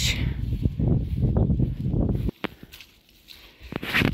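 Wind rumbling on the phone's microphone, which cuts off suddenly about halfway through, followed by a few light knocks.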